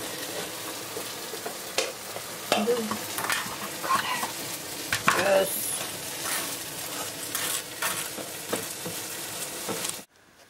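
Steady sizzle of food frying in a pan, with scattered sharp clicks and knocks of kitchen utensils.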